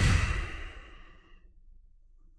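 A man sighing into a close microphone: one breath out, loud at first and fading away over about a second and a half.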